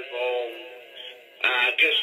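A man's voice rapping over music, thin with no bass. The voice drops back for about a second in the middle and comes in loud again near the end.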